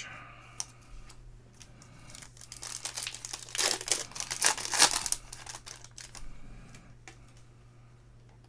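A handful of baseball trading cards shuffled and slid against one another in the hands: a crisp rustling and clicking of card stock, busiest in the middle and thinning out near the end.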